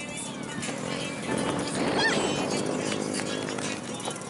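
People's voices on a busy outdoor scene, with a child's short high squeal about two seconds in.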